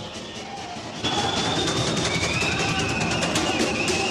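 Music with drums and percussion, which grows louder about a second in, with a high held melody line over many sharp hits.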